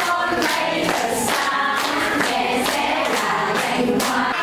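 A group of voices singing together.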